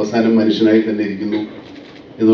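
A man speaking in a low voice through a microphone and PA; his speech trails off about one and a half seconds in.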